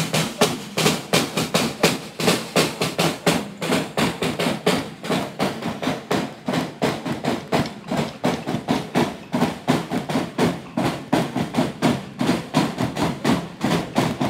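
A metal-shelled side drum beaten with sticks in a quick, steady festival rhythm, with sharp wooden clicks that fit castanets played along with it.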